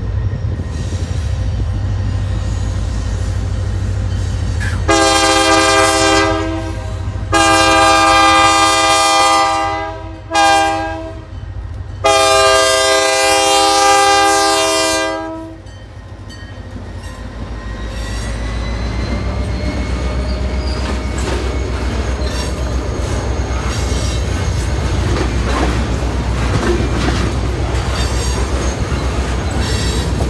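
Locomotive air horn blowing the grade-crossing signal: two long blasts, a short one and a final long one, over the low rumble of the train. After the horn stops, the train's wheels rumble and click over the rail joints as it rolls by.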